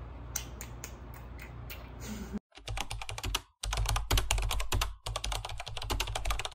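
Keyboard-typing sound effect, rapid key clicks in three or four bursts starting about two and a half seconds in. It follows a few scattered clicks over quiet room tone.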